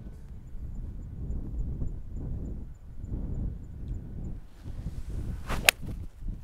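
Golf tee shot with an iron, a 3-iron: the swing's swish builds over about a second and ends in one sharp, crisp crack of clubface on ball near the end. Wind rumbles on the microphone throughout.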